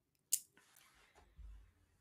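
Quiet pause in a microphone recording: one short, sharp mouth click or breath hiss about a third of a second in, then faint room noise with a soft low bump near the middle.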